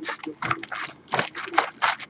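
A cardboard box of Topps Chrome baseball card packs being opened by hand. The wrapped packs and box flap rustle and crinkle in quick, irregular bursts as the packs are pulled out.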